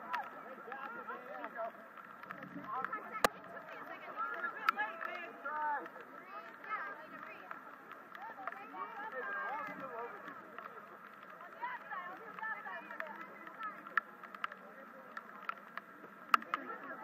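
Indistinct distant shouting and calling from rugby players and sideline spectators, with a few sharp clicks, the loudest about three seconds in.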